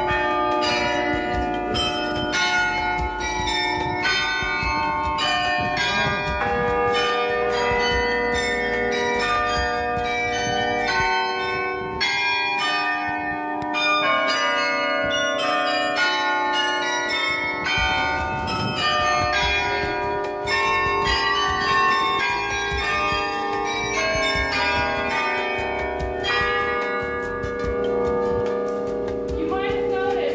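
Bronze church bells of the Dom Tower ringing close by, many bells at different pitches struck several times a second and overlapping as they ring on; the low notes drop out for a while in the middle.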